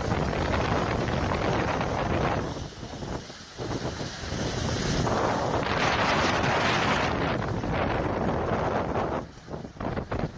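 Strong, gusty wind buffeting the phone's microphone in a steady rush that dips briefly about two and a half seconds in and again near the end.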